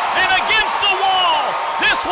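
A male sports announcer calling a deep hit in a raised, excited voice, pitched high and strained.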